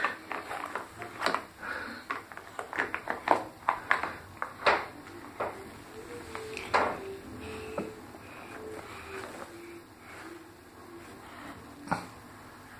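Hard plastic toy vehicle clicking and knocking as it is handled in bathwater, with a string of sharp clacks over the first five seconds. After that it goes quieter, with a faint wavering hum.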